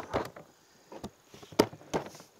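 Hard plastic panels of a YakAttack BlackPak Pro crate knocking and clicking against each other as they are worked into place around the base, a handful of short knocks, the loudest about one and a half seconds in.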